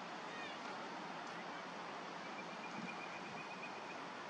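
Steady outdoor background hiss with a few short, high, falling bird chirps about half a second in, then a thin, high, steady trill through the second half.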